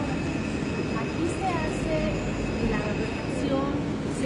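Steady industrial din inside a large workshop, a dense rumbling noise with a faint high hum, with indistinct voices of people talking over it.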